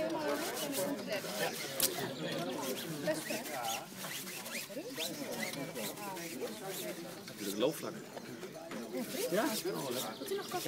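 Indistinct voices of several people talking, over the scratching of a hand brush scrubbing a bicycle wheel's rim and tyre with soapy water.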